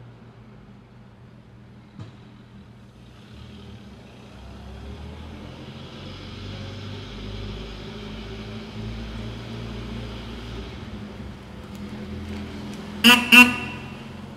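A vintage car's engine running at low speed as it pulls away and drives slowly, growing louder a few seconds in, then two short toots of its horn close together near the end.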